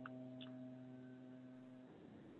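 Near silence with a faint steady electrical hum on an open call line, which cuts off shortly before the end. Two faint ticks come in the first half second.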